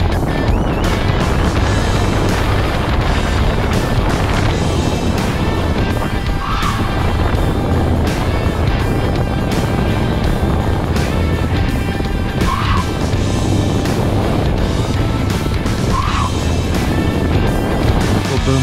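Hyundai Kona Electric driven fast around a circuit: steady rush of wind and tyre noise with no engine note, picked up by a camera mounted outside the car, with three short tyre squeals in the corners. Background music plays underneath.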